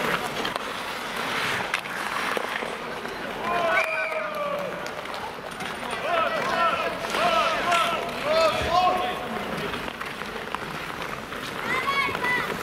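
Ice hockey play: a steady scraping hiss of skates on ice, with players' short, indistinct shouts from about four to nine seconds in.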